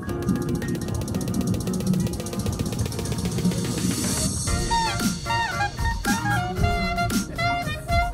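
Electro-Balkan backing track with a drum beat and a fast, even ticking rhythm. About halfway through, a clarinet comes in over it, playing a melody with notes that bend downward.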